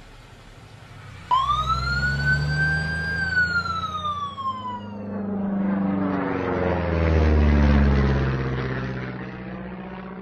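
Ambulance siren: a single wail that rises quickly about a second in, then falls slowly over a low engine rumble. About five seconds in, it gives way to an aircraft passing overhead, which swells to its loudest near eight seconds in and then fades.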